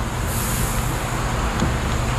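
Steady mechanical hum and noise, with a brief high hiss about half a second in.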